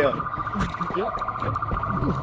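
An electronic alarm tone pulsing rapidly at one steady pitch, with men's voices over it.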